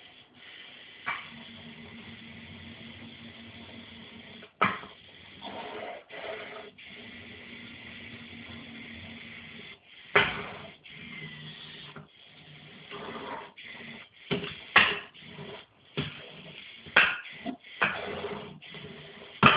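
Small wheeled robot's electric drive motors whirring in spells, stopping and starting as it moves about, with several sharp knocks along the way.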